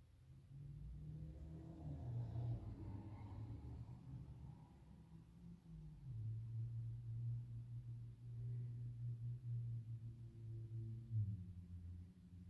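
Quiet low held tones that shift to a new pitch a few times.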